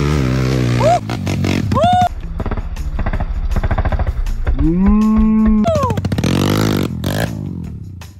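Dirt bike engine pulling hard up a steep dirt climb, its firing pulses quickening, then revving up to a held high pitch for about a second around the middle before dropping back.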